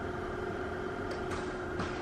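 Steady machine hum with a faint held tone underneath, the room's background noise.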